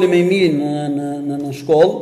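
A man's voice drawing out one long vowel for about a second, its pitch sagging slightly, followed by a short rising-and-falling vocal sound near the end.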